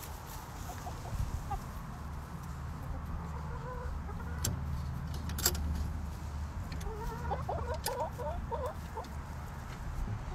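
Backyard hens clucking softly, with a quick run of short clucks about seven seconds in, over a steady low rumble and a few sharp clicks.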